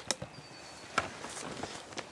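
Footsteps crunching over dry corn stubble, a few separate steps.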